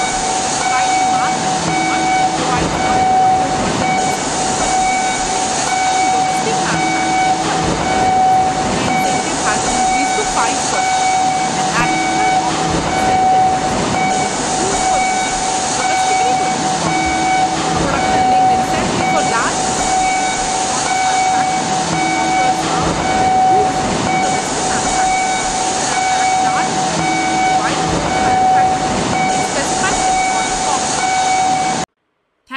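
Industrial machinery noise: a steady hiss with one continuous machine whine, and a pattern of signal beeps that repeats every few seconds.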